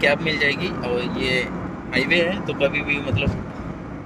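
Speech over the steady road and engine noise of a moving car, heard inside the cabin.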